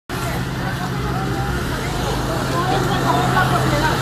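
Street-level voices of several people talking over a steady low hum from a vehicle engine running nearby, with the talk getting busier toward the end.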